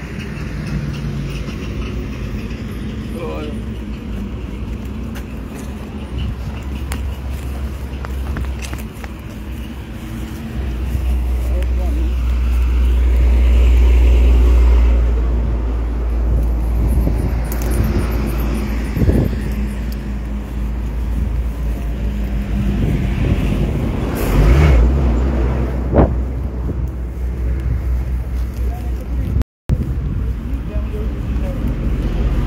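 Highway traffic running past, a deep rumble that swells loudest about a third of the way in and again past three-quarters, with indistinct talk.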